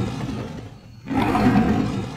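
Lion roaring, as a sound effect: one roar fades away in the first second and a second roar starts about a second in.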